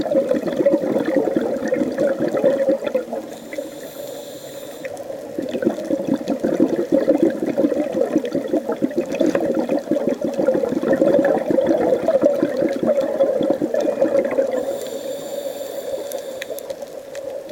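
Scuba diver breathing through a regulator underwater: long rushes of crackling exhaled bubbles, broken about three seconds in and again near the end by quieter inhalations with a faint hiss from the regulator.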